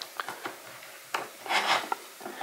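Handling noise from a small metal-cased Android TV box on a wooden stand: a few light clicks and a short rubbing rustle as its power plug is pushed in.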